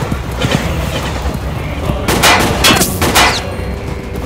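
Several gunshots, each with an echoing tail, the loudest coming in a quick cluster about two to three and a half seconds in, over the steady low rumble of a camel herd's hooves.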